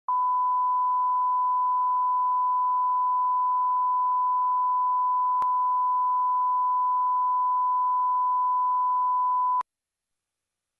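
Line-up test tone played with colour bars: a single steady 1 kHz reference tone that holds for about nine and a half seconds, then cuts off suddenly. There is a faint click about halfway through.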